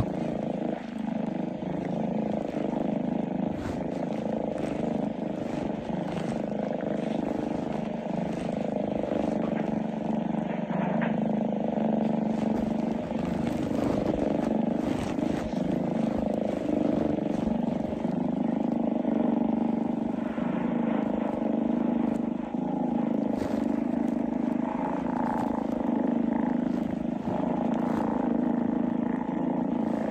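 A steady low mechanical drone with a constant hum, like engine or road noise heard from inside a moving vehicle, with faint rustling on top.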